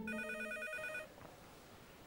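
Cordless home telephone ringing: one warbling electronic ring about a second long.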